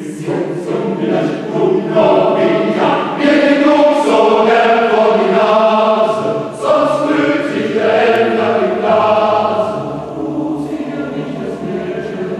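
Mixed choir of men's and women's voices singing, growing louder through the middle and softening near the end.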